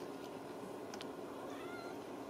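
A young Ragdoll kitten gives one short, high, thin mew near the end, rising in pitch and then levelling off. A steady low hum runs underneath.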